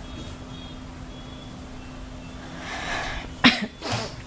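Quiet room noise with a steady low hum, then near the end a woman sneezes: a breathy intake followed by one sharp, loud burst.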